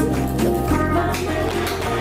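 Background music: an instrumental bed of sustained low bass notes that change pitch twice, with a light melody above.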